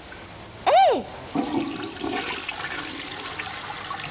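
Toilet flushing: a rushing wash of water starts about a second and a half in and carries on. Just before it there is one short, loud pitched sound that rises and then falls.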